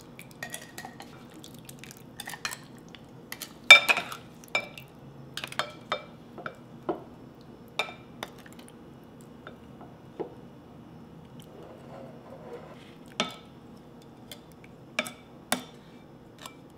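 Wooden spoon knocking and scraping against a glass bowl and a glass jar as crushed, sugared pomegranate seeds are spooned into the jar. Scattered, irregular clinks and taps, a few with a brief glassy ring, the loudest about four seconds in and again about thirteen seconds in.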